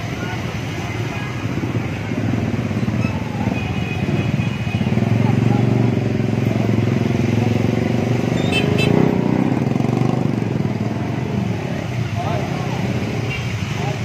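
Motorcycle engines and street traffic running nearby, getting louder about five seconds in and easing off after about ten seconds.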